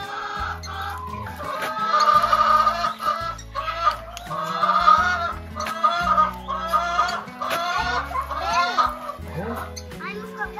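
Chickens clucking and calling in a run of short, repeated calls, over background music with a steady bass line.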